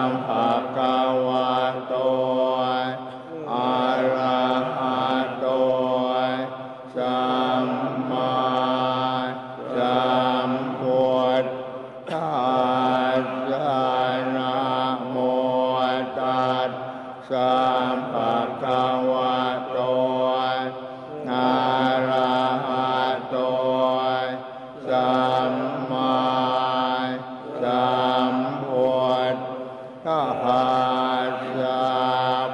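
Thai Buddhist monks chanting Pali blessing verses (paritta) together in unison on a near-steady pitch. The chant pauses briefly for breath every four to five seconds.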